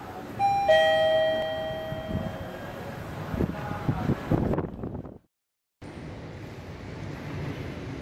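Elevator arrival chime: two descending tones, ding-dong, ringing out for about two seconds, followed by low rumbling thuds. After a brief cut to silence, steady background hum.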